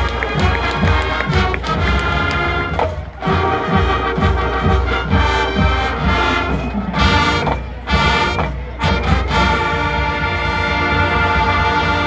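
High school marching band playing a pregame fanfare: full brass chords over drum hits, with a couple of short breaks, ending on a long held chord near the end.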